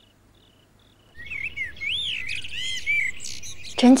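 Birdsong: a series of loud, arching whistled notes sweeping up and down, starting about a second in. Before it, faint short insect-like chirps repeat.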